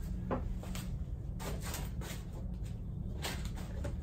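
A few scattered light clicks and knocks from a plastic motorcycle windscreen and its mounting hardware being handled, over a steady low hum.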